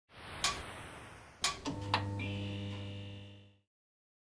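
Opening sound effect: a few sharp clicks, then a low steady held tone that sets in about a second and a half in and fades out shortly before the end.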